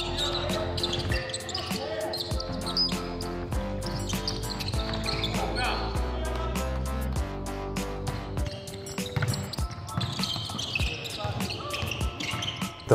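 Background music with a steady beat over the sound of a basketball practice: a ball bouncing on the hardwood court and short squeaks of sneakers.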